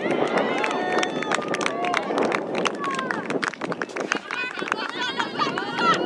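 Outdoor soccer match sound: players and spectators shouting and calling across the field, their high voices rising and falling, over a run of sharp clicks and knocks.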